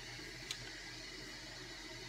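Faint, steady hiss of a running toilet that needs repair, with a light click about half a second in.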